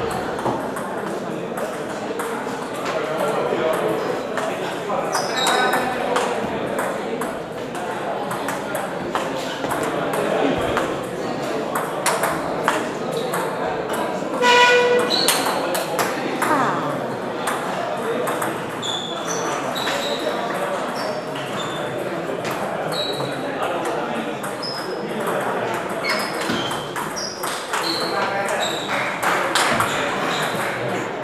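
Table tennis balls clicking on tables and bats, many short sharp knocks from rallies at several tables. Under them is a steady hum of voices, with one short loud shout about halfway through.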